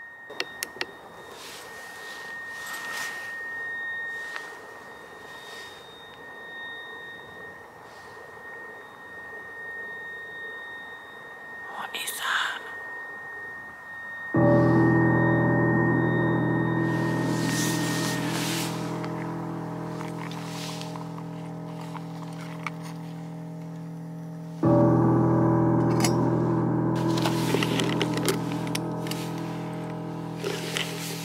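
A long, steady high-pitched whine, one unbroken tone like an electrical appliance. It is heard over the night woods and stops about 18 seconds in. Its source is unknown; she takes it for an alarm or appliance at nearby eco lodges, though it seemed loud and close. About 14 seconds in a loud, deep sustained music chord starts suddenly and slowly fades, and it is struck again about 25 seconds in.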